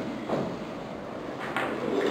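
A short pause in a man's speech: quiet room noise with a faint trailing voice near the start and a brief click about one and a half seconds in.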